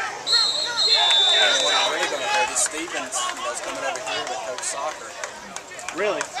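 Referee's whistle blowing a steady, shrill blast of about a second and a half that dips slightly in pitch partway through, signalling the play dead. Many voices of players and spectators talk and shout around it.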